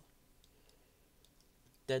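Several faint, scattered computer mouse clicks, then a voice begins with "da" at the very end.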